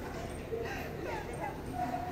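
Cardigan Welsh Corgi whining and yipping, short high whines through the middle and a longer held whine starting near the end, with people talking faintly.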